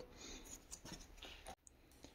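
Near silence with faint rubbing and light clicks of fingers handling a small rubber blanking plug, stopping abruptly about a second and a half in.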